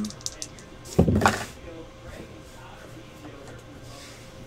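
Dice being rolled: a few light clicks as they rattle in the hand, then a knock about a second in as they land on the desk.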